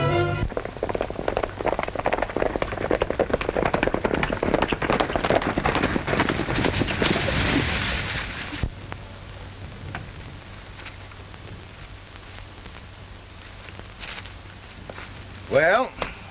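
A loud, dense, rapid clatter for about eight seconds that cuts off suddenly, followed by a quieter stretch with a few single knocks and a man's voice starting near the end.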